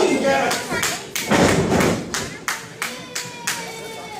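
A wrestler slammed down onto the ring mat with a heavy thud about a second and a half in, among spectators' shouts and a run of sharp hand claps.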